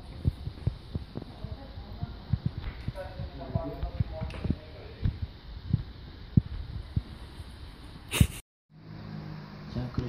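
Faint, indistinct voices in a room under a steady run of short, low thumps. A sharp click comes about eight seconds in, and the sound drops out briefly after it.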